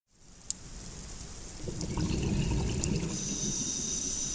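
Underwater ambience: a low, even noise of moving water and bubbling fades in and grows louder, with one sharp click about half a second in and a few faint ticks.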